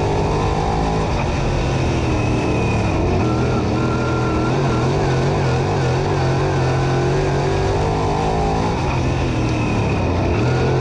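Crate late model race car's V8 engine running hard under the in-car microphone. About three seconds in, the engine note drops as the car slows from speed into a turn, then runs steady through the corner.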